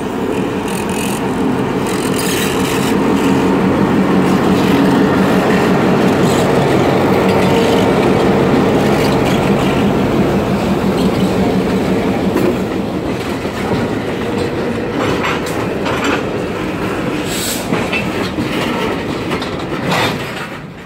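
EMD GP38-2 locomotive's 16-cylinder two-stroke diesel running as it pulls past close by, loudest a few seconds in, then fading as a string of tank cars rolls past with wheels clicking and clattering over the rail joints.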